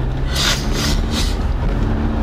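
Two short sniffs or breaths through a congested nose, about half a second and a second and a quarter in, over the steady low rumble of a car's road noise inside the cabin.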